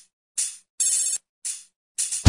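Electronic start-up chime for a "system start": a run of bright, buzzy tones like a phone ringtone. Three tones sound, the middle one held a little longer and the other two fading quickly, with silent gaps between them.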